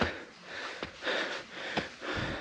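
A hiker breathing hard while climbing steep stone steps: a short breath at the start, then a longer one about half a second in. A couple of footfalls land on the stone, one near the middle and one near the end.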